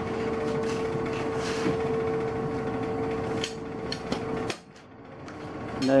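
Metalwork shop background: a steady machine hum with scattered metal knocks and clatter, cutting off sharply about four and a half seconds in.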